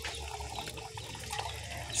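Faint, steady running water with a low rumble underneath.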